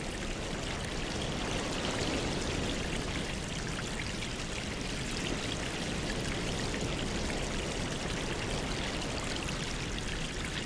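Aquarium water movement and a stream of air bubbles rising and breaking at the surface, making a steady bubbling trickle.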